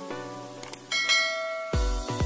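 Background music under a subscribe-button sound effect: a short click, then a bright bell-like ding about a second in that rings for most of a second. Near the end a heavy electronic bass beat kicks in.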